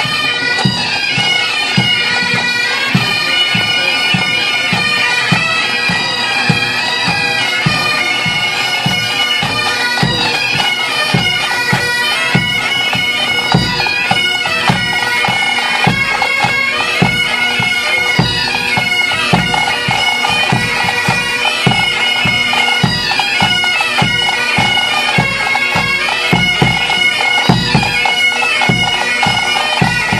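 Pipe band playing on the march: bagpipes sounding a melody over their steady drones, with a regular beat from bass and snare drums.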